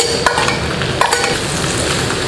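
King oyster mushroom slices sizzling as they hit a hot wok of pork fat and chili sauce and are stirred, with a few sharp clinks of the steel bowl and ladle against the wok, at the start and about a second in.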